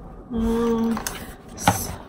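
A woman's short, level closed-mouth hum, about half a second long, followed near the end by a single sharp click.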